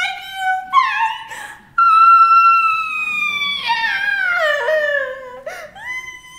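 A woman's exaggerated theatrical wailing: a few short sobbing cries, then one long, very high cry held for a couple of seconds that wavers and slides down in pitch.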